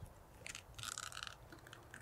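A fillet knife crunching through a trout's bones, a faint crackling that lasts about a second in the middle.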